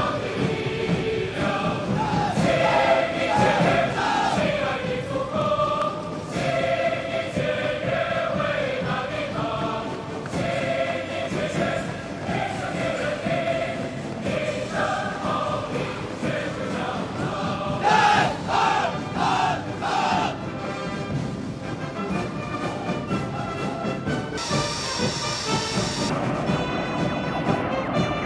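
Massed choir singing with band accompaniment in a stirring march-like piece. Near the end a high hiss joins in.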